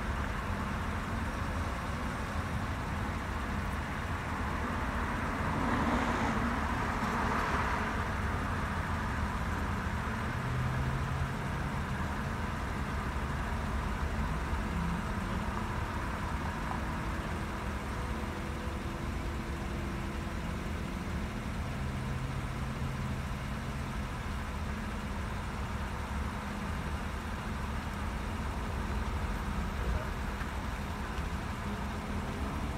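Vehicle engines idling close by, a steady low rumble, with road traffic behind it and a brief swell of louder noise about six seconds in.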